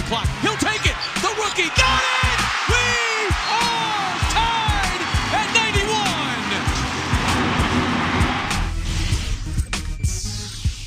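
Arena crowd noise during live basketball play, with sneakers squeaking on the hardwood court and the ball bouncing. The crowd swells about two seconds in and drops away suddenly near the end.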